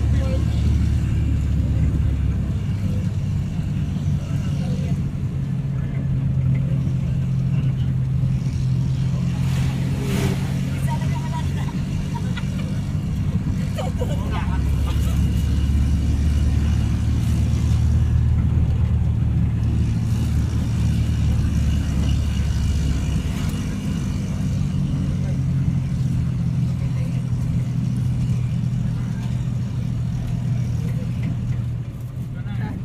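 Engine and road noise of a moving vehicle heard from inside it: a steady low drone whose pitch steps up and down a few times as the engine speed changes.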